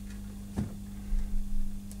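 A few faint clicks and taps of a small screwdriver and wire ends working a stepper driver's screw-terminal block, over a steady low hum.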